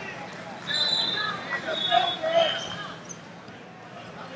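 Voices calling out in a large gym hall around a wrestling mat. Three short, high-pitched squeaks sound in the first two and a half seconds, and it quietens near the end.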